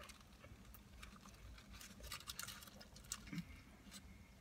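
Faint chewing of a mouthful of beef burrito, with scattered soft clicks and crunches.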